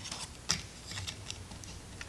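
Faint small clicks and light handling of a Rolleiflex 2.8F being loaded, as the film's paper leader is threaded to the upper take-up spool. The sharpest click comes about half a second in.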